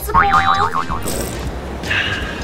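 A comic wobbling boing sound effect, its pitch warbling rapidly up and down for just under a second, over background music.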